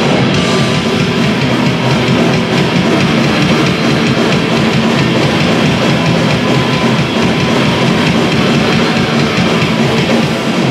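Live punk rock band playing loud: distorted electric guitars and a drum kit, steady and dense throughout, with no vocals.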